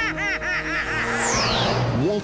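An animated villainess's voice laughing in a quick run of 'ha-ha' syllables that ends about half a second in, over orchestral film music. This is followed by a high whooshing sweep that falls steeply in pitch.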